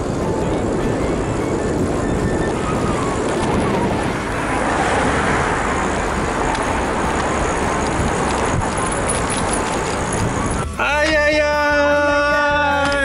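Wind rushing over the microphone and road and traffic noise from a bicycle coasting fast downhill without pedalling. About eleven seconds in, this cuts abruptly to music with a singing voice.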